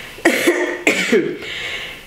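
A woman coughing twice, two short coughs about half a second apart.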